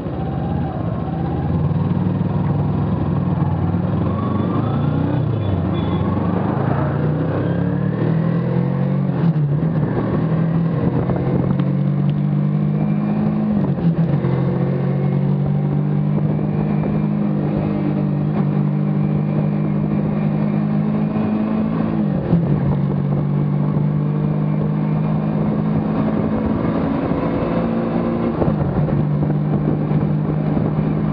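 Kawasaki Ninja 300's parallel-twin engine heard from the bike under way on a highway: the engine note rises through the first ten seconds or so as it accelerates, with a few short dips in pitch at gear changes, then holds a steady note at cruising speed over road and wind noise.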